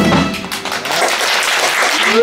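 Audience applause right after the band's closing chord: the chord's tail dies away in the first moments, then a dense, even clapping carries on.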